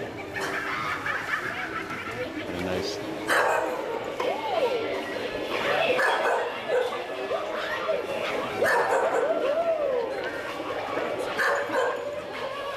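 A small dog barking repeatedly in short yapping calls, amid people's voices.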